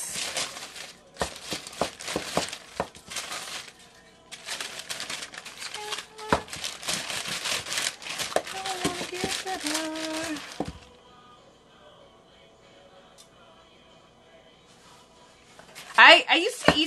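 Parchment paper crinkling and rustling as tortilla dough is rolled out under it with a rolling pin, stopping about ten seconds in.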